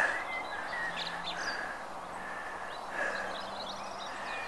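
Outdoor hillside ambience: a steady background hush with a few faint, scattered bird calls.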